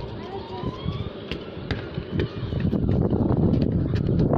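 Slowed-down sound from a slow-motion shot of a football being kicked: a low, smeared rumble with slowly rising gliding tones in the first half and a few sharp knocks.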